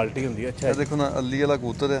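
Domestic pigeon cooing alongside men's talk.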